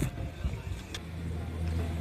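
A motor vehicle's engine running close by in a car park: a low, steady hum that sets in about a second in.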